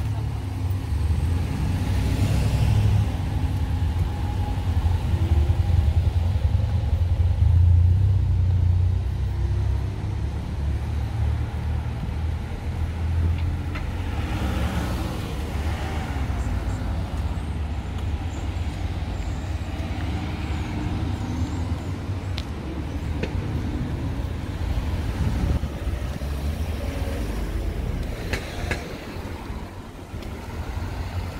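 Road traffic on a town street: cars driving past over a constant low rumble. One car passes about two seconds in and another around fifteen seconds.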